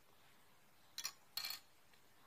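Faint room tone, broken about a second in by two brief, sharp sounds, the second slightly longer and choppy.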